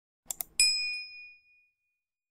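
Subscribe-button sound effect: a quick double mouse click, then a single bell ding that rings out and fades over about a second.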